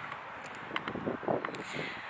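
Open-air ambience with light wind noise on the microphone and a few faint clicks.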